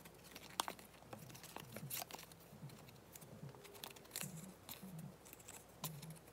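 A stack of small paper photo cards being thumbed through and shifted by hand: faint paper rustling with scattered light clicks as the cards slide and tap against each other.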